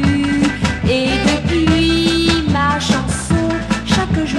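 Early-1960s French pop song playing from a stereo EP record: a band with a steady drum beat under held melody notes.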